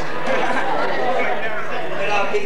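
Several audience members talking and calling out at once in a hall, voices overlapping, over a steady low hum.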